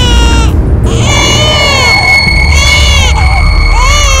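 An infant crying in repeated rising-and-falling wails, about one a second, over a film score with a sustained high note and a low drone.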